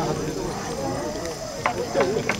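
Music cuts off at the start, leaving a low murmur of voices.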